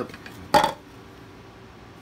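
A single short, sharp clack about half a second in, as a small headlamp is taken out of its holder on a plastic Festool Systainer toolbox.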